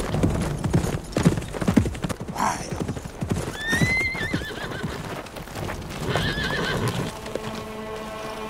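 A horse galloping, its hooves pounding irregularly over bare earth, then whinnying about four seconds in, with a shorter whinny near six seconds.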